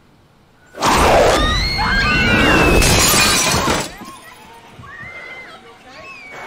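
Horror-film soundtrack: after a hush, a sudden loud crash of shattering glass lasting about three seconds, with shrill rising-and-falling cries over it, then fainter cries.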